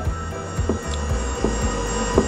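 MIG welder wire-feed drive motor running steadily, pushing 0.8 mm wire through the drive rolls and torch. The wire is feeding smoothly with no slippage at the rolls. Background music plays under it.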